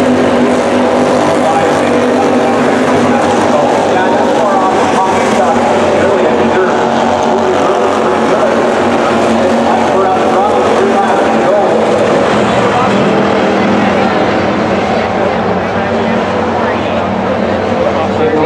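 Slingshot dirt race cars' small engines running at speed as they lap the track, a steady, loud drone of engine noise with pitch wavering as cars pass.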